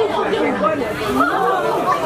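Several people talking at once in lively, overlapping chatter.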